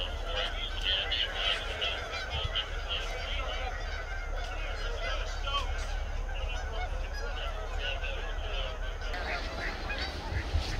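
Geese honking in a quick run of calls over the first three seconds, with scattered calls later.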